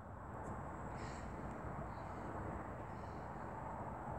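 Faint steady outdoor background noise with no clear single source, broken by a few faint short high chirps about one, two and three seconds in.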